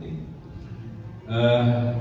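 A man's voice: after a short, quieter pause, a drawn-out hesitation sound is held on one steady pitch for under a second near the end.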